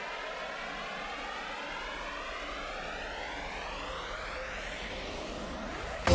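Synthesized noise riser in an electronic song's intro: a steady whoosh of noise with a sweeping, jet-like flanger effect rising in pitch throughout. The full beat comes in loudly at the very end.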